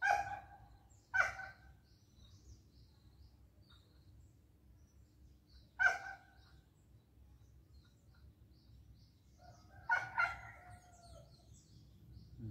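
Short calls from domestic fowl: two near the start about a second apart, one about halfway, and a longer, drawn-out one near the end. Small birds chirp faintly and high in the background throughout.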